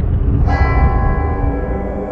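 A deep bell struck once about half a second in, ringing on and slowly fading over a low rumbling drone in the soundtrack music.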